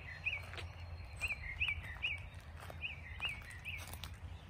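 A songbird singing a steady series of short, clear up-and-down whistled notes, about two a second, over a low background rumble.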